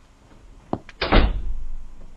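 Front door being shut: a click, then a loud slam about a second in, with a low boom that dies away over the next second.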